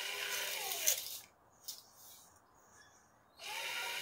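Cordless drill motor whining as it spins a chopstick in its chuck to wind a boxing hand wrap onto it. The motor stops a little over a second in and starts again near the end.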